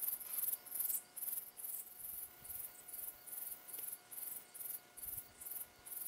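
Insects chirping in a steady, even rhythm: short high-pitched pulses, about two to three a second.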